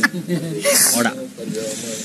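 People talking, with a brief hissing sound, like a drawn-out 's' or 'shh', a little before halfway.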